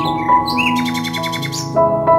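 Slow piano music with long held notes, and a small bird chirping over it, breaking into a fast trill of rapidly repeated notes for about a second.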